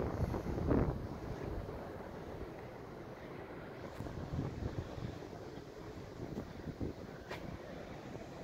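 Wind on the microphone, a low, unsteady rush, with two faint ticks partway through.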